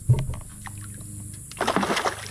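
A dull thump at the start, then a pole-and-line bait slapping the water surface with a short splash near the end. The guide splashes the water this way to draw piranhas to the bait.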